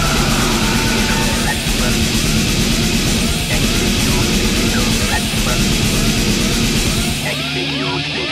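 Loud, distorted alternative rock band playing, dense and full. Near the end the low end drops away, and repeated short squeals that glide up and down in pitch carry on above it.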